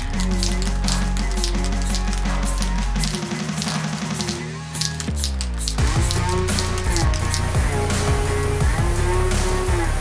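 Background music with a steady beat. About three seconds in the bass drops out; a falling sweep a couple of seconds later leads into a fuller, heavier beat.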